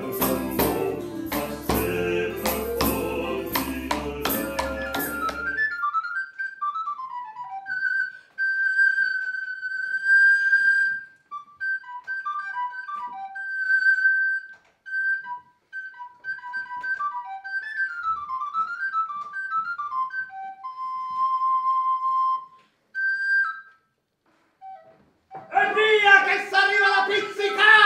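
A Baroque ensemble of lute with a hand drum and jingling percussion plays for about the first six seconds and stops. A solo wooden recorder then plays an unaccompanied melody of quick running notes and longer held notes, with short pauses between phrases.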